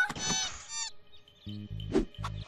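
Cartoon soundtrack music. In the first second a pitched sound glides up and then slides down, and a few short, deep low notes follow near the end.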